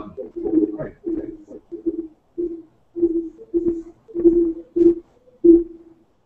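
Choppy, garbled speech coming back over a video-call link, each burst carrying the same low ringing note. This is audio feedback through a computer monitor's built-in speaker and microphone.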